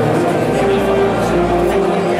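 Processional wind band (banda de música) playing held brass chords, with a deep bass note coming in about half a second in.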